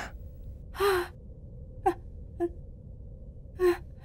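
A woman gasping in shock, four short breathy catches of breath spread over a few seconds, over a low steady background hum.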